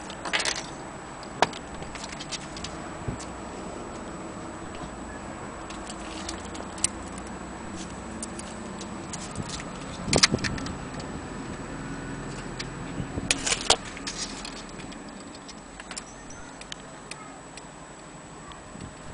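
Antique Vienna wall clock movement ticking, a run of light clicks. Louder clicks and clatter from handling break in a few times, most strongly about ten seconds in and again around thirteen to fourteen seconds.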